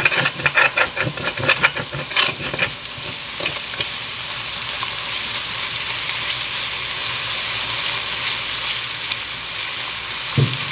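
Grated garlic sizzling as it fries in vegetable oil in a pot. A spoon stirs it in a quick run of strokes for the first few seconds, then the sizzle goes on evenly.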